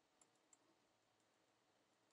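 Near silence, with two faint clicks from working a computer, about a quarter and half a second in.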